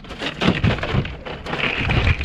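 Knocks and rattles from a plastic cooler as a redfish goes in and the lid is handled and shut: a run of short clatters, loudest about a quarter of the way in and again at the end.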